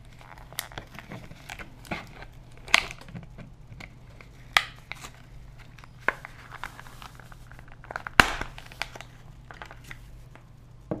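Clear plastic blister packaging crinkling and crackling as it is worked open by hand, in irregular snaps, the loudest about eight seconds in.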